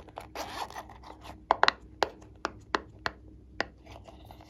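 Zipper of a silicone pop-it coin purse drawn briefly, then a series of about seven sharp clicks as the purse is handled.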